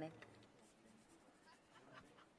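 A voice cuts off at the very start, then near silence with a few faint ticks.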